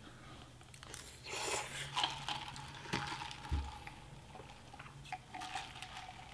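Close-miked eating: a person chewing food, with scattered mouth clicks and a brief noisier stretch about a second and a half in, over a faint steady hum.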